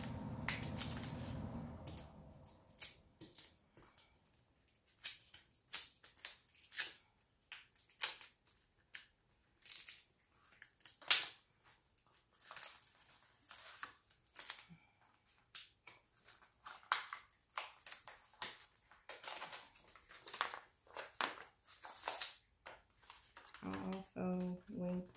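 Plastic transfer tape and its paper vinyl backing being peeled apart and handled: a long run of short, irregular crinkles and crackles. A steady low hum sounds for about the first two seconds.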